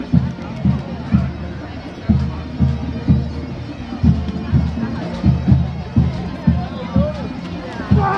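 Pipe band playing in the background: bagpipes over a drum beat of low thumps about twice a second.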